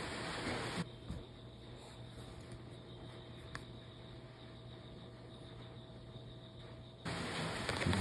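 Quiet room tone: a faint steady hum and hiss, with a few light ticks of a paper scratch ticket being handled.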